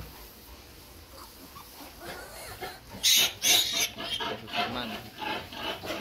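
Newborn piglets squealing: two loud, shrill squeals about three seconds in, followed by shorter, softer squeals.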